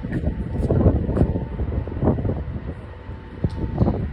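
Long Island Rail Road M7 electric train approaching the station, a steady rumble mixed with wind noise on the microphone.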